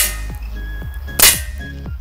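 Two shots from a handgun, one right at the start and another about a second later, each a sharp crack with a short tail. Background music plays under them.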